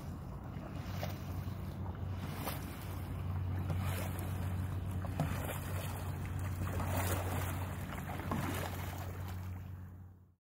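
Stand-up paddle board paddle strokes dipping into calm water every second or two, over a steady low hum and some wind on the microphone.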